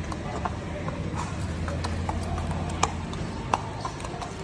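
Horse walking on arena dirt under a rider: irregular hoof clicks and thuds over a steady low hum.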